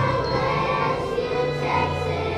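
Elementary school children's choir singing, with low held notes of an accompaniment underneath.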